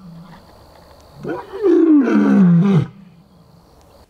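Male lion roaring: one long, loud roar about a second in, falling in pitch as it goes, lasting nearly two seconds.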